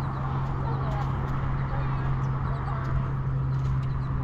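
Footsteps on sand with rough outdoor noise, a steady low hum throughout and faint voices in the background.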